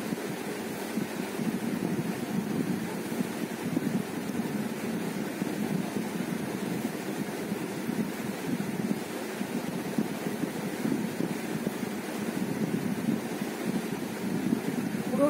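Steady low rumbling background noise with no speech.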